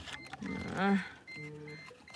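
A car's electronic warning chime beeping steadily, a short high beep repeating a few times a second, with a voice saying 'uh' and a brief hum over it.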